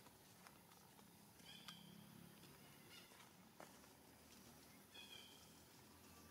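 Faint, short, high-pitched calls from an infant monkey, twice: about a second and a half in and again near the end. A few faint clicks come in between.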